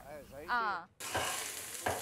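A short voice, then, after a sudden cut about a second in, food sizzling in a wok as a spatula stirs it, with a few scraping knocks of the spatula on the pan.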